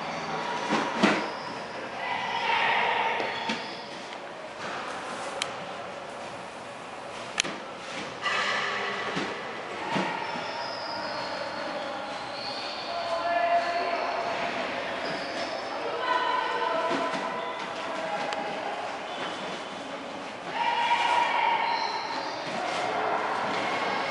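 Indistinct voices in a room, some of them high-pitched, with a few sharp knocks and thuds from the drill on the floor mats.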